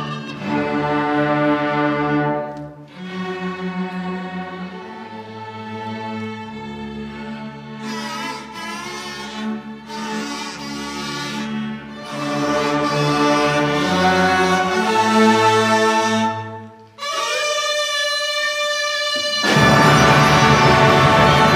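A student orchestra of strings with winds and brass plays slow, sustained chords. About 17 seconds in, the sound cuts off suddenly, leaving a single instrument holding one note, and the full ensemble comes back in loudly near the end.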